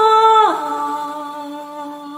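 A voice humming a slow lullaby melody: a held note that slides down to a lower one about half a second in, which is held and slowly fades.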